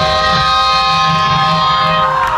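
A chord on electric guitars held and left to ring out steadily through the amplifiers at the end of a live rock song, with crowd noise underneath.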